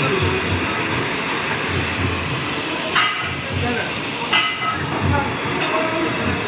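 Steady workshop machine noise: a low rumble with an uneven beat and a hiss that swells for a couple of seconds about a second in, then again near the end.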